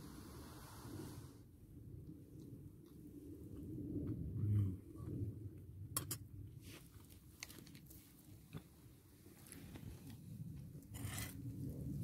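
A man chewing a mouthful of pulled pork, with a metal utensil clicking and scraping against the inside of a metal pot, most sharply about six seconds in.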